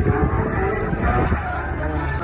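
A drift car's engine revving as it slides through the course, its pitch rising and falling, with voices in the background.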